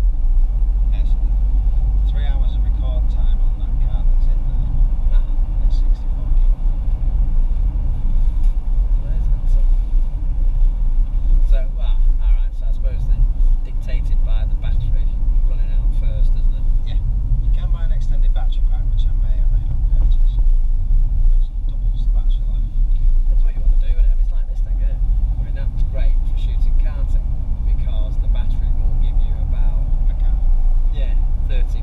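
Steady low rumble of a car's engine and tyres heard inside the cabin while driving along at a constant pace, with quiet voices coming and going over it.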